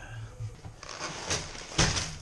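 A cardboard Lego set box being opened and handled, with scraping and rustling that ends in a short, louder scrape.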